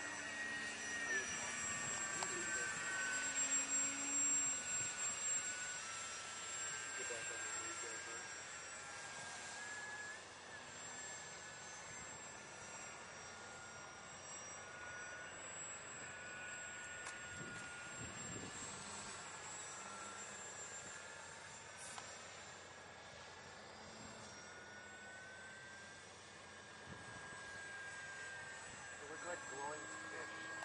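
Several small electric RC model airplanes flying overhead, their motors and ducted fans whining, with the pitch of each gliding slowly up and down as the planes circle and change throttle.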